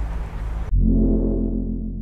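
Outdoor background noise breaks off about a third of the way in for a sudden deep synthesized musical hit, a low booming chord that slowly fades: the opening sting of a video intro.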